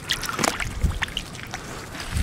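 Shallow water sloshing and dripping as a hand lifts a rock out of a pond and reaches back in, with a few short splashes and clicks.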